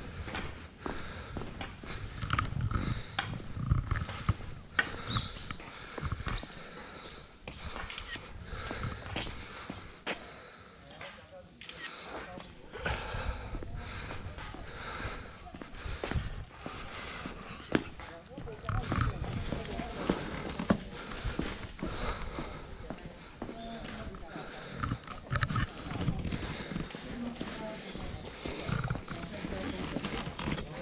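Footsteps on stone paving and stone steps at an irregular walking pace, with low rumbling noise on the microphone coming and going and indistinct voices.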